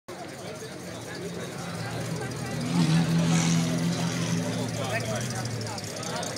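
Mercedes-Benz 300 SL's straight-six engine running steadily at low revs as the car creeps forward at walking pace, louder around the middle as it passes close by, with crowd chatter underneath.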